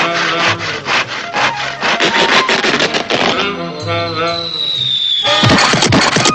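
Cartoon sound effect of a crosscut saw sawing through a tree trunk, about three rasping strokes a second over orchestral music. Then a falling whistle, and a sudden loud burst near the end.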